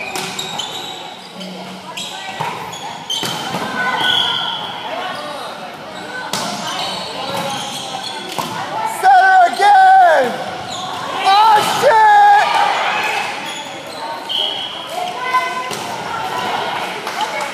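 Volleyball rally in a large, echoing gym: the ball is struck now and then, sneakers squeak on the wooden court, and players talk. Two loud shouts come about halfway through.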